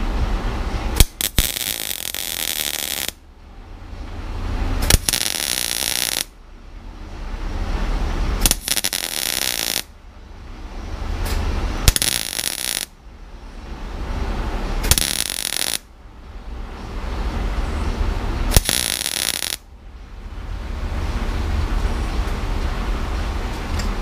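MIG welder arc crackling in about six short bursts of one to two seconds each, with pauses between, as a blob of weld is built up on the end of a broken exhaust stud in a cylinder head so the stud can be gripped and pulled out.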